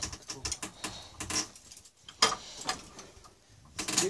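Car jack being pumped against a dented bumper: irregular metallic clicks and knocks, with one sharp crack about two seconds in.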